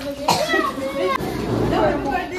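Children's and adults' voices chattering over one another, with a brief knock about a third of a second in.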